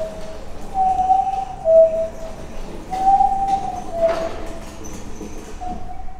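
A low hooting, whistle-like tone repeats as a falling two-note call, a held higher note dropping to a shorter lower one. It sounds three times, about every two and a half seconds.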